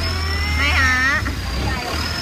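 A boat's engine running steadily: a continuous low hum with a thin high whine above it that wavers slightly in pitch.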